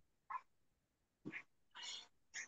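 Near silence on a video call, broken by three faint, short, hissy puffs of noise, the last one a little longer, near the end.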